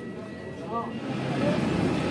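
Background chatter of other people, with a steady engine rumble that grows louder from about a second in.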